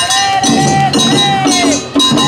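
Awa Odori festival music: a kane hand gong is struck on a steady beat of about two strokes a second, ringing, over a long high held note that bends down near the end, with lower instruments underneath.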